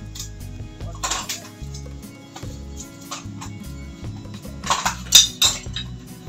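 Metal utensils clinking against cookware several times, the loudest clinks about five seconds in, over background music with a steady beat.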